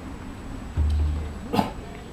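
A single short dog bark about one and a half seconds in, just after a brief low rumble.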